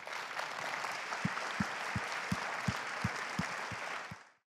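Audience applauding after a talk, a dense steady clapping. From about a second in, a steady low thump repeats about three times a second beneath it.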